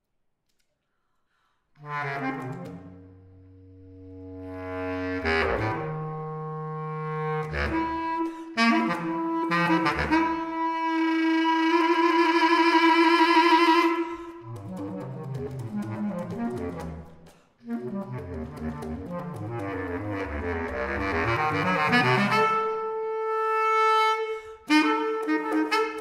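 Solo bass clarinet playing contemporary music: after about two seconds of silence it enters on a low note, then moves through a string of notes to a loud, wavering held note about midway. After a short break it plays denser passages and a steady held higher note near the end.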